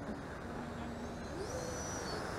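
Faint whine of an electric ducted-fan RC jet over a steady hiss of rushing air. About one and a half seconds in, the whine rises in pitch and then holds steady.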